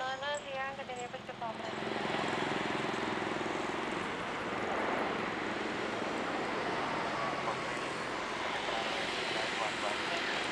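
Jet airliner engines running: a steady broad rush of engine noise comes in about a second and a half in and holds to the end, after a brief voice at the start.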